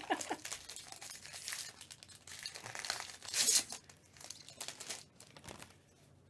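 Foil trading-card pack wrapper being torn open and crinkled in gloved hands, a run of crackling rustles that is loudest about halfway through.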